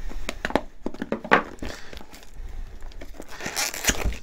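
Cardboard filament box being cut and torn open by hand: a run of scattered clicks, scrapes and short tearing and crinkling noises from the packaging.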